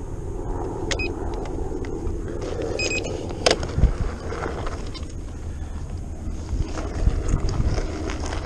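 King Song S18 electric unicycle's 18×3-inch tyre rolling over a gravelly, sandy dirt trail: a steady rumble and crunch of the tyre on the ground, with a few sharp knocks as it strikes stones, the loudest about three and a half seconds in.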